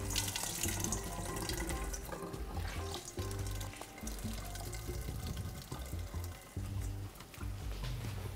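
Kitchen tap running into a stainless sink as a bunch of fresh herbs is rinsed and wrung out by hand, water splashing and dripping; the running water is loudest in the first couple of seconds. Light background music plays underneath.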